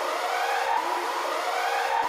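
Siren-like warning sound effect: a steady tone overlaid with repeated rising pitch sweeps, edited in under a caution title card.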